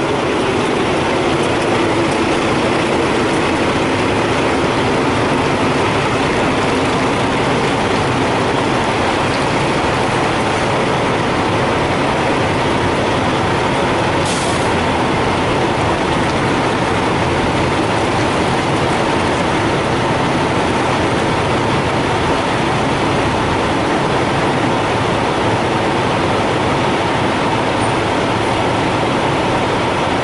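Diesel semi-truck engines idling steadily, with a brief high hiss about halfway through.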